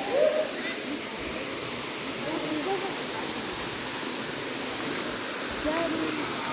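Steady rushing of a small waterfall pouring into a stream pool, an even hiss of falling water.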